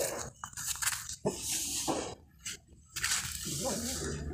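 Leaves rustling and twigs crackling in short spells as a leafy shrub is pushed aside by hand, with a near-silent gap a little past halfway.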